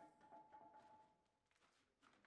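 Near silence, with a faint held tone in the first second that then fades away.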